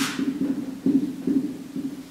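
Marker writing on a whiteboard: an irregular run of low, dull knocks of the board, about two or three a second, as the marker is pressed on in short strokes.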